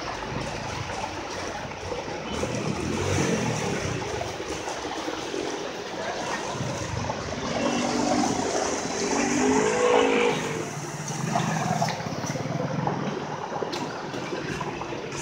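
Water gushing from a leaking water main, with motor vehicles passing through the flooded road; one passing vehicle is loudest about eight to ten seconds in.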